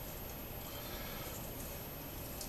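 A hand crushing and bruising staghorn sumac berries in a bowl of water: a faint, even noise with no distinct knocks.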